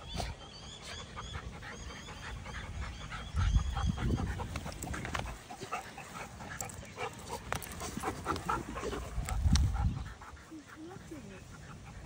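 A Staffordshire bull terrier puppy and a larger dog play-fighting roughly: panting and scuffling with scattered small clicks, and two low rumbles about a third of the way in and near the end.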